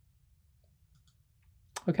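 A few faint computer mouse clicks over a low background hum, with a man's voice starting near the end.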